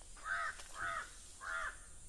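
A crow cawing three times in an even series, each caw short and arched in pitch.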